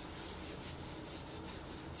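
Whiteboard eraser rubbing across a whiteboard in quick, repeated back-and-forth strokes, wiping off marker writing.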